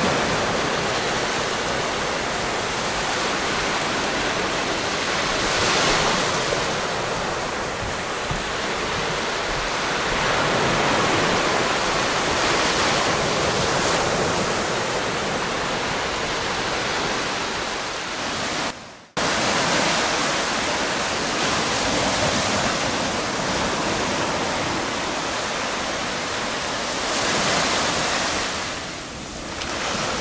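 Small sea waves breaking and washing up a sandy beach right at the microphone: a steady rush of surf that swells every few seconds. The sound cuts out suddenly for a moment about two-thirds of the way through.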